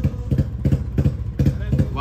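Royal Enfield Bullet single-cylinder motorcycle being kick-started: an uneven run of low thumps, about four or five a second, as the engine turns over and fires.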